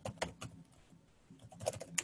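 Computer keyboard keystrokes: a quick run of typing, a pause of about a second, then another short run of keys near the end.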